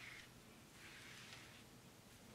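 Near silence, with a few faint soft swishes of a foam brush wetting the transfer paper on a T-shirt.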